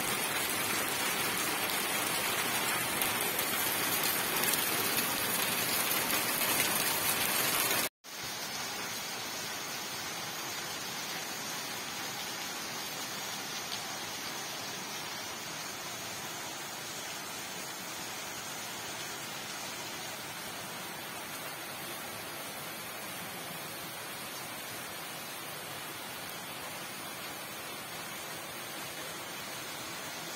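Steady rain tapping on a roof, an even hiss with no separate drops standing out. About eight seconds in it cuts out abruptly for a moment, then carries on quieter and steady.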